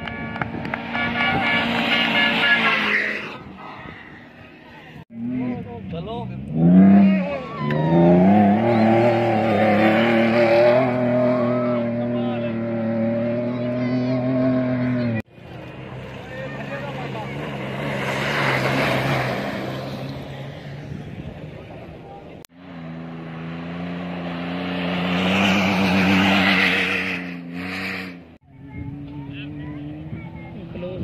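Rally jeeps racing past on a sand track, one after another in short cut-together shots. Each engine revs hard and climbs in pitch through the gears, swelling as the jeep nears and fading as it goes. The shots end abruptly.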